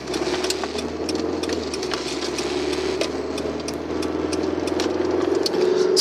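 Car engine and road noise heard inside the cabin while the car turns a corner: a steady low hum under a mid-pitched drone, with light clicks running through it, growing a little louder near the end.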